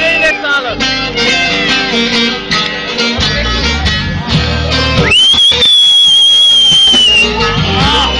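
Instrumental passage of Turkish folk music on an amplified bağlama (long-necked saz) plucking quick notes, with an electric bass coming in about three seconds in. About five seconds in, a high steady whistling tone sounds over the music for some two seconds.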